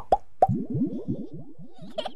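Cartoon plop sound effects in a BBC Kids channel ident, marking the letters popping onto the screen. A few sharp pops, each falling in pitch, come first, then a quick run of smaller falling plops.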